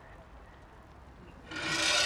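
A short, loud rasping rub about one and a half seconds in, over a low steady background.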